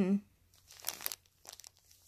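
Faint rustling and crinkling of a baby's bassinet fabric and bedding in two short stretches as the infant squirms and mouths at it.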